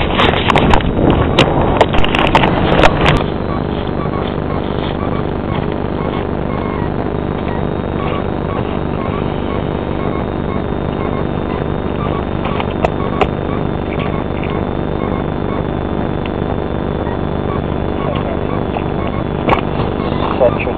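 A steady mechanical drone of many fixed tones, with loud bursts of rough noise over it in the first three seconds.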